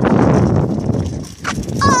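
Loud rumbling, rattling noise of a bicycle being ridden with the phone camera jostling on it, with a knock about one and a half seconds in, then a boy's short shout of 'Oh!' at the very end.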